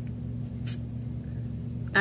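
A steady low hum in the room, with a brief soft rustle of a paperback book being handled about two-thirds of a second in.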